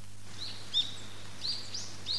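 Small birds chirping in short, repeated high calls over a light outdoor background hiss that fades in just after the start, with a faint steady low hum underneath.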